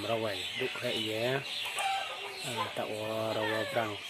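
A man's voice speaking, with no other distinct sound.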